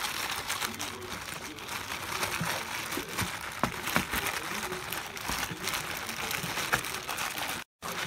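Plastic bags and a shop rag crinkling and rustling as hands work around an aircraft engine's oil filter, wrapped to catch the oil while it is removed, with a few small clicks.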